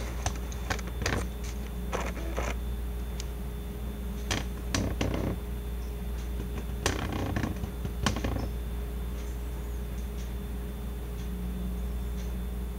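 Scattered light clicks and taps of plastic camera gear being handled and turned on a table, over a steady low hum; the clicks thin out after about nine seconds.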